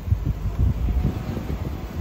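Low rumble of a car rolling slowly, with uneven wind buffeting on the microphone.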